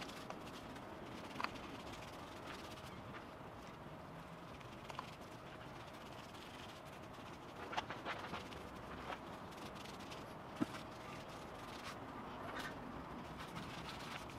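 Faint background ambience with a steady low hum and a few scattered light taps and clicks: a small cluster about eight seconds in and one sharper click near the ten-and-a-half-second mark.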